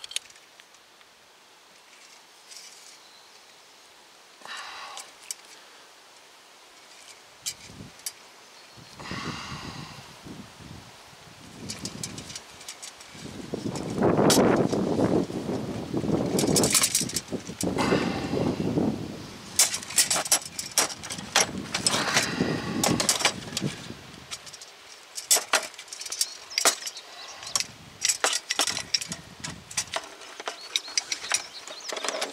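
Metal clicks, clinks and rattles of a hand-held brake-line flaring tool being handled and its yoke cranked down on a brake line. The sounds are louder and busier through the middle and second half.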